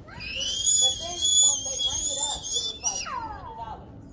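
Bicycle brakes squealing: a loud, high-pitched squeal held for about three seconds that slides down in pitch and fades as the bike slows.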